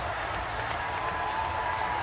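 Hockey arena crowd applauding and cheering steadily after a home-team goal.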